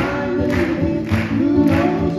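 Live acoustic music: two acoustic guitars strummed to a steady beat about twice a second, under held, many-voiced singing.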